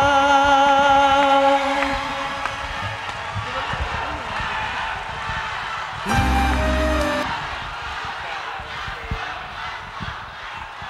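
Live pop ballad at the end of a stage performance: a male singer holds a long note with vibrato over the backing music, ending about a second and a half in. The music then fades and softens, with one short, loud, low note around six seconds in.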